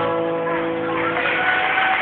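The last guitar chord of a live song rings out and fades. Audience applause starts to swell about a second in.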